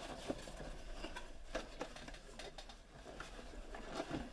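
Cardboard mystery box and the Funko Pop box inside being handled and slid out: scattered light rustles and small taps of cardboard.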